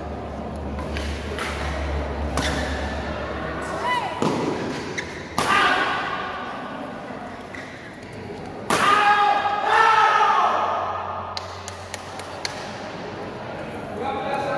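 Badminton doubles rally in an indoor hall: sharp racket strikes on the shuttlecock and shoes thudding on the court, ringing in the hall. Loud voices shout briefly about five and a half seconds in and again, louder and longer, from about nine to ten and a half seconds.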